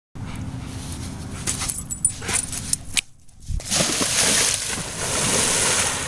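A dog swimming, splashing steadily through river water from about four seconds in. Before that there are a few clicks and knocks.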